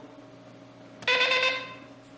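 Game-show buzzer sounding once, a short steady horn-like tone that starts suddenly about a second in and fades out. It signals that the contestant's answer is ruled out: wrong, or not allowed because it is hyphenated.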